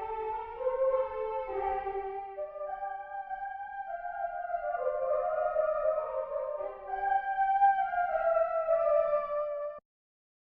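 GarageBand iOS Alchemy synth 'Female Choir' patch (soft vibrato) playing a choral line in sustained, wordless sung notes that move stepwise, with its delay and reverb turned down, bass raised and treble lowered. The notes stop abruptly just before the end.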